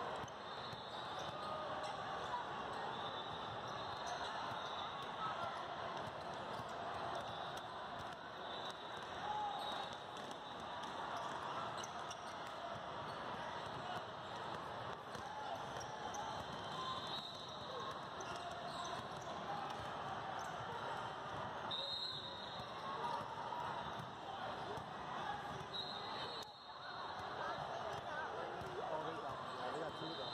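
Basketballs bouncing and dribbled on a court floor, with many short thuds, over the steady chatter of many voices in a large hall.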